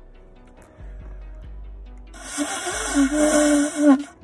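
A shofar blown in one long, loud blast starting about halfway in. Its note wobbles at first, then holds steady with a bright, buzzy edge, and cuts off just before the end.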